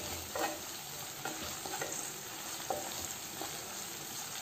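Chopped onions, green chillies and curry leaves sizzling in oil in a non-stick kadai, stirred with a wooden spatula that scrapes and knocks against the pan several times.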